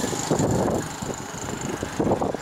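Wind buffeting the camera's microphone in irregular gusts, a loud low rumble that eases off around the middle.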